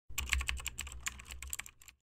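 Computer keyboard typing sound effect: a quick run of sharp key clicks, about ten a second, over a low hum, stopping just before the end.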